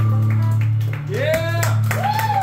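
Electric guitar held on a low, steady note ringing through the amp as a song ends, with scattered clapping and a voice calling out about a second in.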